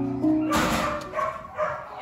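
Background music with slow held notes that stop about a quarter-second in, followed by a short rustling noise and faint dog sounds.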